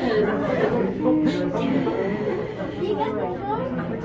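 Indistinct chatter of several people talking over one another in a crowded room, with no clear words and no other sound standing out.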